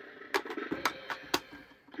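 Electronic toy bank's speaker playing faint tones with sharp ticks about twice a second, between its spoken prompts.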